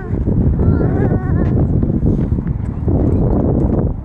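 Footsteps crunching on a dirt and gravel trail, with wind buffeting the microphone as the camera is carried along.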